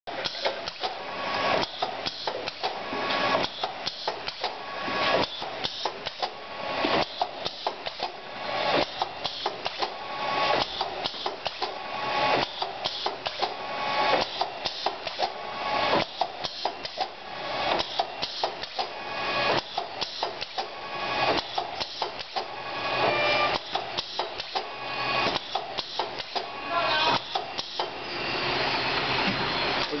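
Automatic powder filling and packaging line running: the filler, conveyor and pneumatic cylinders clatter and knock in a repeating cycle about every second and a half to two seconds as jars are indexed under the nozzle and filled, with a short tone recurring in each cycle. Near the end a steadier rushing noise takes over.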